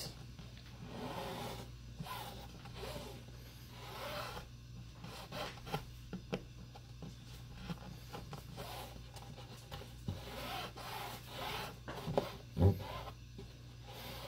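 Fingers rubbing and pressing along a strip of adhesive tape on a wooden tabletop in repeated short strokes, smoothing the layers so they stick together. A single sharp thump about a second and a half before the end.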